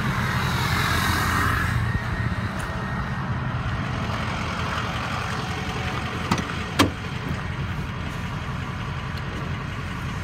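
Ford 6.0 Power Stroke V8 turbo diesel idling steadily. About six seconds in, two sharp clicks as the crew cab's rear door handle is pulled and the door latch opens.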